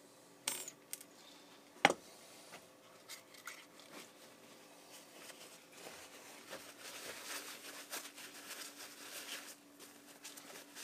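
A few sharp metallic clinks of small anodized aluminium parts being handled, the loudest about two seconds in, then paper towel rustling as a part is wiped dry.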